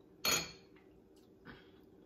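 Metal spoon clinking against a small glass bowl of sauce: a sharp knock about a quarter second in, then a fainter one about a second and a half in.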